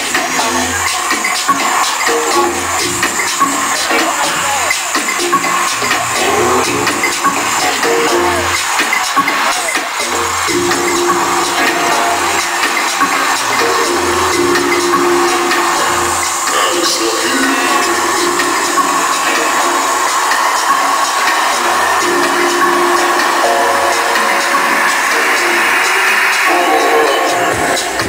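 House music from a DJ set playing loudly over a club sound system, with a recurring bass line under sustained synth tones.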